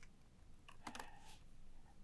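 Faint typing on a laptop keyboard: a few light, scattered key clicks.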